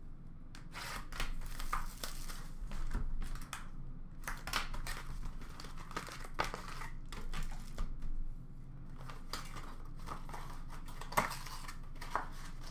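A sealed box of trading cards being opened by hand: plastic wrap crinkling and tearing, and cardboard and packs rustling, in irregular spurts. A sharp tap comes near the end.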